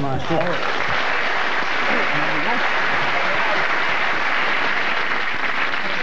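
Studio audience applauding steadily, with a few voices faintly over it near the start.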